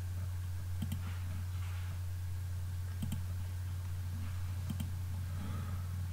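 A few scattered computer mouse clicks over a steady low electrical hum.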